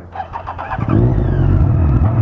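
Honda Hornet 600's inline-four engine revved in quick blips, starting loud about three-quarters of a second in, its pitch rising and falling.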